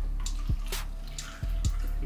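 Water poured from a plastic bottle into a small plastic cup.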